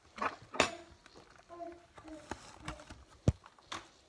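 Sharp knocks and rubbing right at the phone's microphone as the animals press against it, the loudest knock a little past three seconds in. Between the knocks come a few short, soft sounds of steady pitch, like quiet hums or calls.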